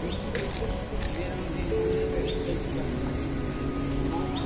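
Soft background music with long held notes comes in about two seconds in, over a steady outdoor background hiss.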